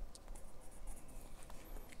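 Art X alcohol marker tip scratching faintly on paper in a few short strokes as thin branch lines are drawn.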